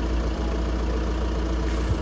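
Steady low mechanical hum, like an engine idling.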